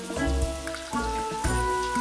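Background music with a steady beat over water spraying from a shower into a bathtub.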